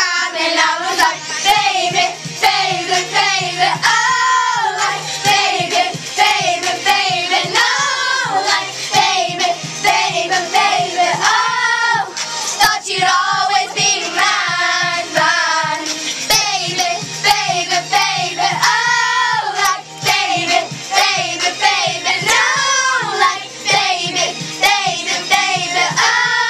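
A group of young girls singing loudly together in unison, along with a pop song over a steady beat.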